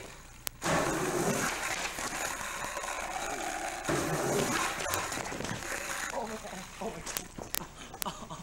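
Skateboard clacks and impacts on concrete over noisy camcorder sound. There is a sharp knock about half a second in, another near the middle, and two hard impacts close together near the end as the board and skater hit the ground in a fall.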